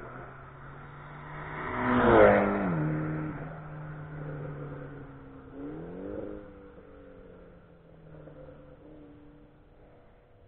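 A car on a race track passes the trackside wall at speed. Its engine is loudest about two seconds in, and its note drops in pitch as it goes by. Around six seconds the engine note rises as it accelerates further away, then fades out.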